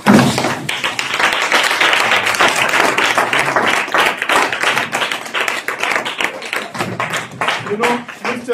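A loud, dense jumble of raised voices with no clear words, mixed with taps and thuds.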